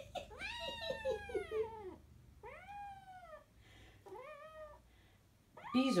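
Kitten meowing three times while pinned by a larger cat in play-wrestling: first one long call, then two shorter ones. Each call rises and then falls in pitch.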